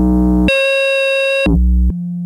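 Synton Fenix 2 analog modular synthesizer sounding held notes through its VCF4 low-pass gate and waveshaper. A low buzzy note is replaced about half a second in by a brighter, higher tone for about a second, then a low note returns near the end.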